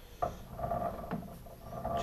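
Metal lathe chuck spun by hand with the spindle in neutral: a click about a quarter second in, then a faint steady whir as it turns.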